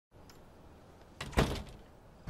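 A few quick clicks, then a single sharp thud about a second and a half in, over a faint steady hiss.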